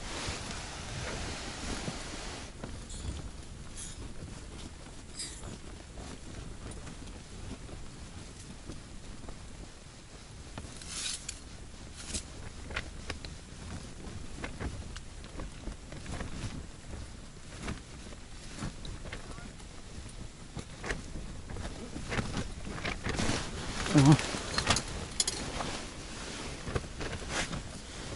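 Small scattered clicks and rustles of hands handling an ice-fishing rod, reel and line while changing the jig, over a low steady hiss. A brief murmur of voice comes near the end.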